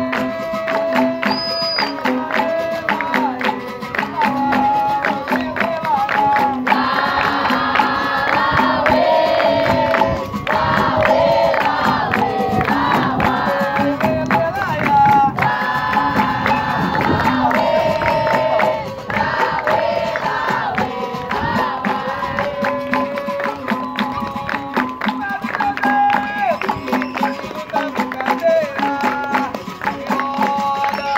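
Capoeira roda music: call-and-response singing, the group joining in chorus at intervals, over steady hand clapping and a repeating percussion beat.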